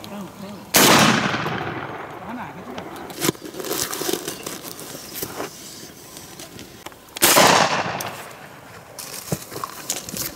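Two shotgun shots about six and a half seconds apart, each a sharp report followed by a rolling echo that fades over about a second.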